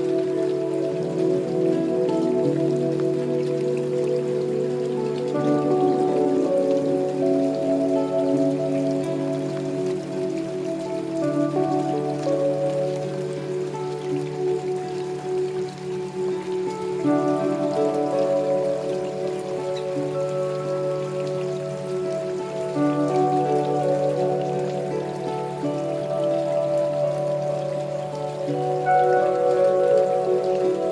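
Steady rain falling, mixed with slow new-age music of long held notes and chords over a low sustained bass note, the chords shifting every few seconds.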